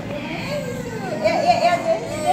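Overlapping chatter of several voices talking at once, children's voices among them.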